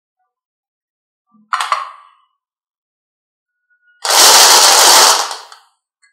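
A single short clack about a second and a half in, then marbles clattering together in a plastic cup in a dense rattle for about a second and a half.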